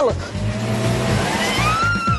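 An SUV's engine revs hard under load as it climbs a steep sandy hill, over a steady hiss. Partway through, a woman's scream rises in pitch and is then held high.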